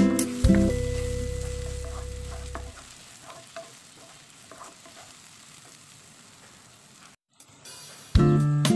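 A strummed guitar chord rings out and fades over the first few seconds; then a faint sizzle of green beans and potatoes frying in a nonstick kadai, with light scattered scrapes of a wooden spatula stirring them. The sound cuts out briefly near the end.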